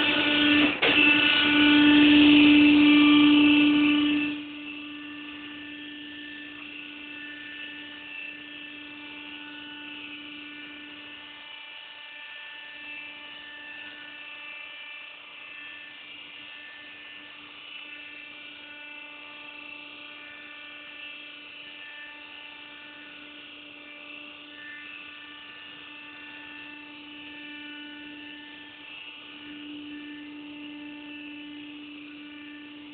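Freight elevator's drive motor running with a steady whine, loud for the first four seconds, then dropping suddenly to a quieter even hum that carries on. A single click about a second in.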